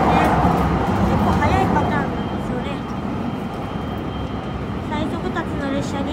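Steady low rumble of an electric express train running, heard from inside the car, a little louder in the first couple of seconds. Indistinct voices are heard in the background.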